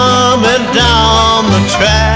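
Early bluegrass band playing: banjo and guitar over a bass stepping between two low notes, with a sliding melody line above.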